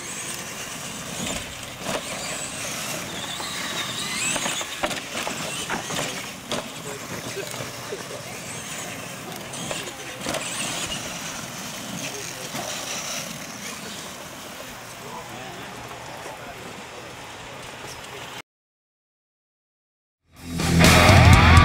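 R/C monster trucks racing on a dirt track: electric motors running and tyres scrabbling on dirt, with scattered knocks as a truck lands off a jump. The sound cuts off suddenly near the end.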